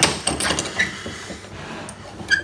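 Bench vice being wound shut by its handle to clamp a diamond sharpening cone: a knock at the start, then a sliding, scraping rattle of the screw and bar that fades within the first second, with a brief squeak.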